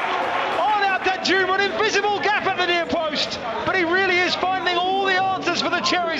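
A male football commentator speaking continuously.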